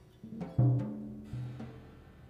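Sparse accompaniment from the band's rhythm section: a few light percussive clicks, then two low notes that ring on, about half a second in and again just over a second in, the first the loudest.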